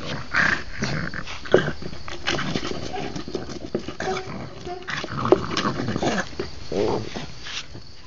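A French Bulldog shoving a large plastic bowl about with its mouth and paws: the bowl scrapes and knocks on brick paving in irregular knocks, along with the dog's own throaty noises.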